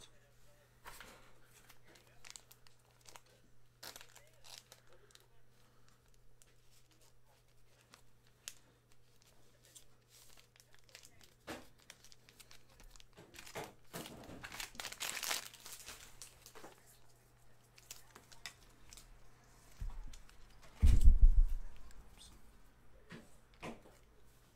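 Plastic bag crinkling and rustling as trading cards are handled and slipped into it, loudest a little past the middle. A heavy thump near the end is the loudest sound, over a faint steady low hum.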